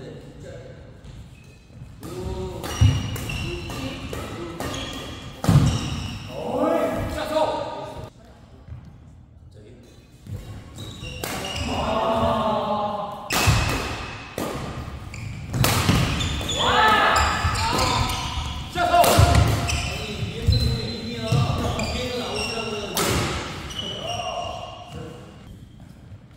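Badminton doubles rallies: sharp strikes of rackets on the shuttlecock and players' footfalls on the court, with players' voices calling out in between.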